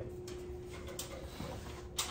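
Quiet room tone with a steady low hum and a few faint, short clicks.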